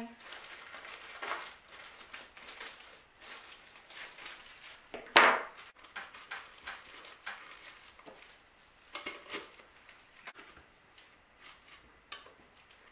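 Black plastic garbage bag rustling and crinkling in irregular bursts as it is folded and tucked into a pot around blocks of floral foam, with one louder, sharper crackle about five seconds in.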